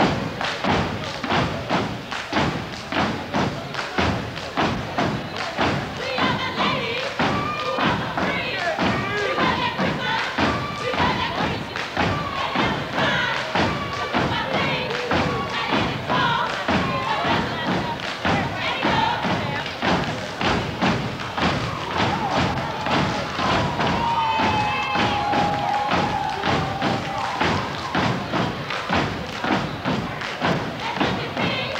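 Step team stomping and clapping in unison, a steady rhythm of about three hits a second, with voices chanting over it. About 24 seconds in, one long held call falls slightly in pitch.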